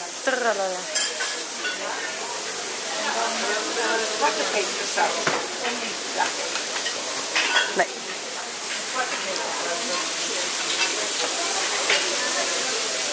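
Meat sizzling on a restaurant hot-plate grill, a steady hiss, under the chatter of a busy dining room with a few sharp clinks.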